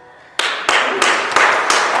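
Applause from a congregation in a large hall, beginning about half a second in. Loud single claps close by come about three times a second over the general clapping.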